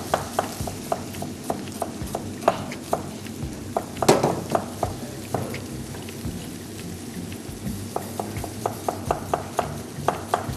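Chicken pieces frying with garlic and spices in oil in a wok: a steady sizzle dotted with frequent sharp crackles and clicks, with one louder knock about four seconds in.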